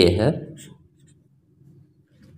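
A man says one short word, then a felt-tip marker writes faintly on paper, drawing a letter and arrows.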